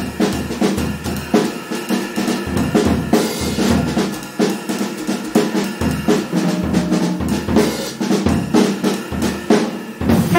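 Jazz drum kit solo played with sticks: a dense, irregular run of snare and rimshot hits, tom and bass drum strokes, and cymbal crashes.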